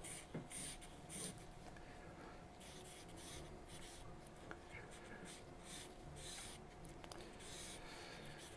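Drawing pencil scratching over paper in an irregular run of short, quick strokes, faint and hissy.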